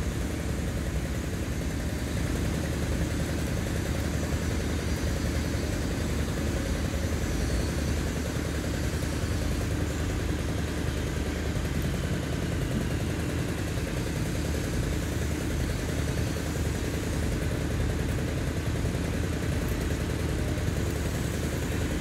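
A small engine running steadily at idle: a low hum under an even hiss.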